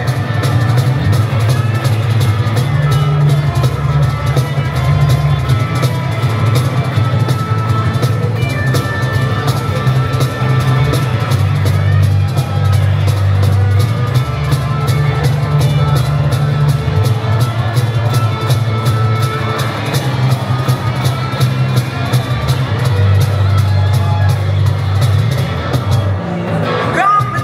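Live acoustic trio playing an instrumental passage. A strummed acoustic guitar and a bass guitar carry a prominent, moving bass line, and a cajon box drum keeps a steady beat.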